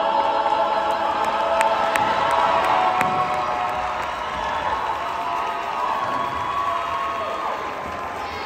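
A mixed choir holding and releasing its final chord, followed by audience cheering and scattered claps.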